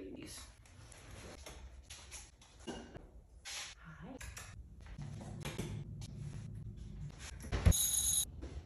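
Shuffling slipper footsteps and small handling noises around a kitchen, ending in one sharp clink with a short ring near the end as a pet bowl on the floor is picked up or set down.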